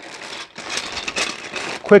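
Clear plastic parts bags crinkling and rustling as hands shift and lift them, a noisy crackle that continues until a spoken word near the end.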